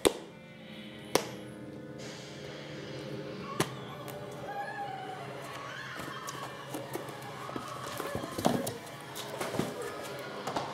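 Steady background music, with a few sharp knocks from kittens pouncing and batting at a folding fabric cat tunnel on a wooden floor. The loudest knocks come right at the start and about a second in, with a cluster of scuffs and taps near the end.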